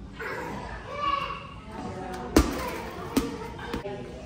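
Rubber playground ball bouncing on a hard tiled floor: a sharp thud about two and a half seconds in and a second, smaller one under a second later, over children's voices.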